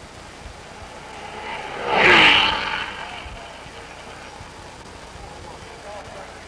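A racing car passes at speed about two seconds in: its engine note swells quickly, peaks, then drops in pitch and fades as it goes by.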